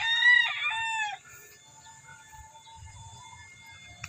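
A rooster crowing once, a multi-part crow that ends a little over a second in.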